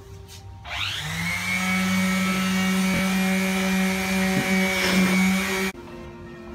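Electric power sander starting up with a rising whine, running steadily while sanding wood, then switching off abruptly just before the end.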